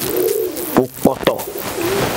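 A bird calling: one low note that rises and falls at the start and a shorter one near the end, with a few sharp clicks between them and a steady hiss throughout.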